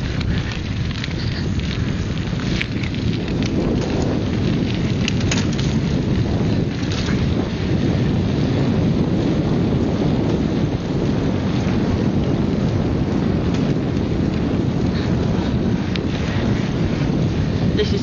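Wind buffeting the microphone of a camcorder carried on a moving bicycle: a steady low rumble, with a few faint clicks.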